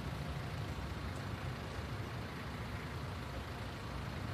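Steady low engine and road rumble of a taxi, heard from inside its passenger cabin.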